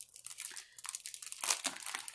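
Paper and packaging crinkling and rustling as hands open and handle them, a run of irregular crackles.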